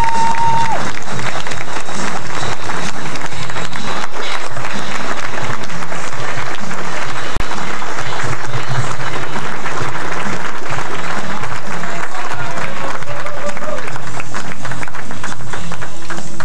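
Banquet audience applauding at length, a dense unbroken clapping that cuts out for an instant about seven seconds in.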